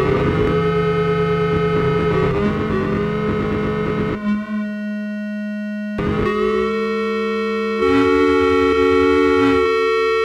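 Electronic music from an Atari 800XL home computer: steady held chords that switch abruptly a few times, with a thinner, quieter stretch in the middle.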